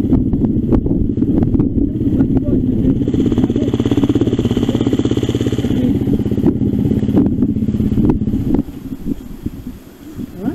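Off-road trail motorcycle engine running with a fast, even firing beat. The note picks up briefly from about three seconds in to nearly six, then the engine cuts off about eight and a half seconds in.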